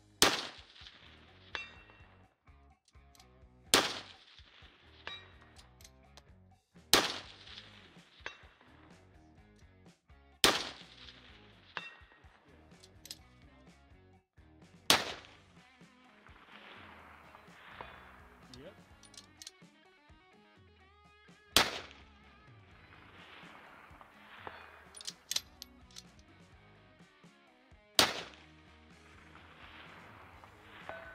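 Rifle shots fired from prone, seven spaced a few seconds apart. Most are followed about a second or so later by a fainter, sharp clang from the distant steel target being hit.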